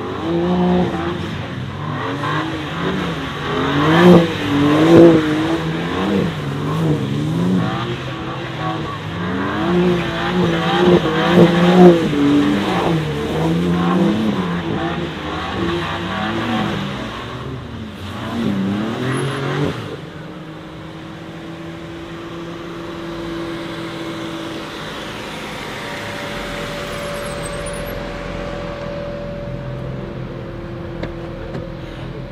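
BMW M4 Competition twin-turbo straight-six engines revving up and down over and over as the cars drift in tandem. About twenty seconds in, the revving stops abruptly and a quieter, steady engine note follows.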